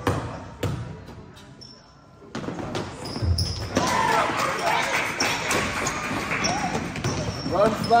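A basketball bounces on a gym floor a couple of times in the first second. After a short lull, the gym fills with shouting voices and the ball bouncing again from about two and a half seconds in, as live play resumes.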